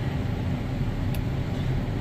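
Steady low rumble of a tractor and combine running side by side during on-the-go unloading of corn, heard from inside the tractor cab.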